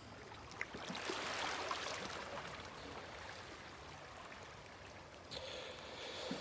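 Small waves on a flat sea lapping and washing among shoreline rocks, a faint wash that swells about a second in and slowly dies away.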